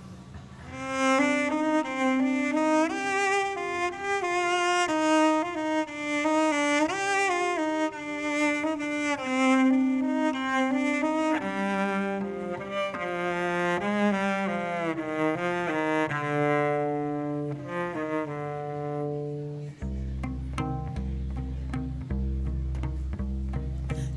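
Solo cello, bowed, playing a slow, winding melody that steps gradually down in pitch. Over the last few seconds it settles into low held notes with light regular clicks.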